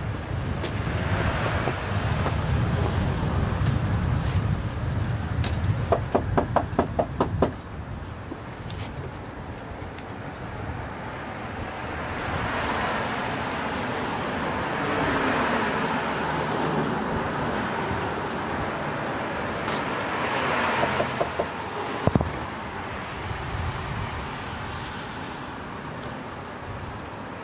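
Street traffic: cars passing, their noise swelling and fading. A quick rattle of clicks comes about six seconds in, and a single sharp knock later on.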